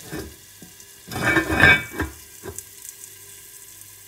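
Chicken and onions frying in an enamelled cast-iron Zwilling pot as its lid is put on: bursts of sizzling and lid noise in the first two seconds or so. After that the covered pot goes quiet, with a faint steady hum behind it.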